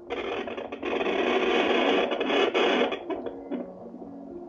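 Fetal Doppler probe on a pregnant belly giving loud static hiss and crackle as it is moved about in search of the baby's heartbeat. The static stops about three seconds in after a few clicks.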